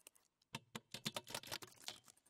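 Faint, rapid, irregular clicking and ticking from a contemporary electroacoustic piece for saxophone and live electronics, with a short pause before the clicks resume about half a second in.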